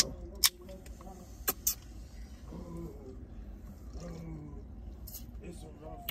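Four sharp clicks and knocks inside a parked car's cabin, two close together at the start and a quick pair about a second and a half in, over a low steady rumble.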